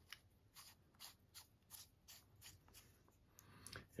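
Faint ticks and light scraping from the threaded barrel of a Devaux pen-style UV laser lamp being screwed shut over its batteries, a few small ticks per second.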